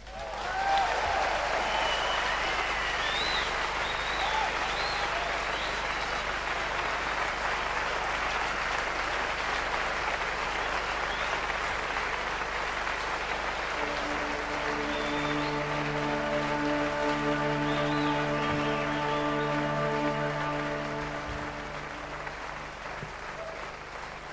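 Concert audience applauding and cheering after a song ends, with whistles in the first few seconds. About halfway through, a held chord from the band sounds under the applause and stops shortly before the applause dies down at the end.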